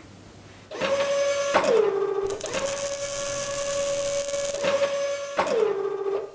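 A steady whirring like a small electric motor starts about a second in and drops in pitch twice as if spinning down, with a hiss over it in the middle: a mechanical sound effect for the logo outro.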